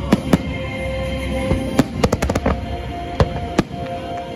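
Aerial fireworks bursting with sharp bangs and cracks, including a rapid run of about five cracks about two seconds in, over steady show music.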